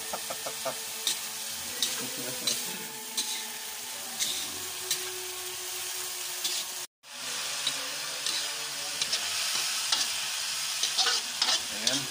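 Julienned palm heart sizzling in a wok as it is stir-fried, the spatula clicking and scraping against the pan. The sound cuts out abruptly for a moment just past halfway.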